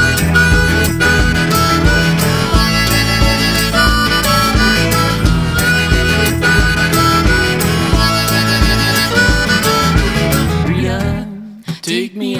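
Harmonica solo of quick melodic notes, hands cupped around it, over a folk band's guitar and a steady beat. Near the end the band stops abruptly, leaving a brief lull.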